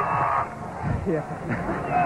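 Excited television sports commentator's voice: a drawn-out shout that breaks off about half a second in, followed by quieter, scattered speech.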